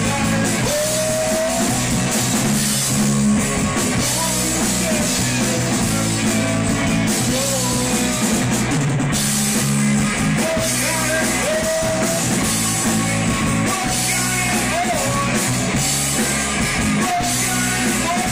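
Live rock band playing: electric guitars, bass guitar and drum kit at a steady loud level, with a male singer on the microphone.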